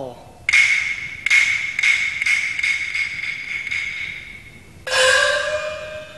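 Chinese opera percussion (luogu) interlude: a run of sharp strokes about two a second over a high ringing metal tone that slowly fades. Near the end comes a single gong stroke whose ringing tone rises slightly in pitch, as a small opera gong does.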